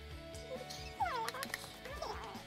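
Background music with steady held notes, and a short high cry that falls in pitch about halfway through.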